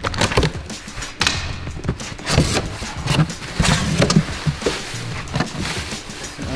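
A cardboard shipping box being torn open by hand: irregular crackles and rips of cardboard, packing tape and plastic wrap, over background music.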